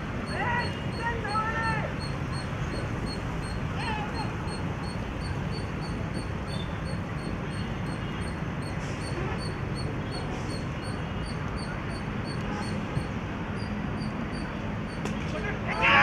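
Steady open-air background noise at a cricket ground, with a few faint, distant calls in the first few seconds.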